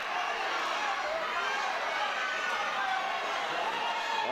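Spectators at a kickboxing bout shouting and chattering in a steady crowd hubbub, with faint scattered calls and no distinct punch or kick impacts standing out.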